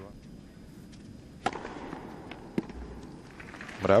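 Tennis ball struck by rackets: two sharp hits a little over a second apart, a serve and its return, with a fainter tap between them, over quiet arena background.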